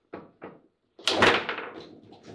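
Table football ball and rods clattering: two light knocks, then about a second in a loud rapid flurry of sharp knocks as the ball is struck by the figures and the rods bang against the table.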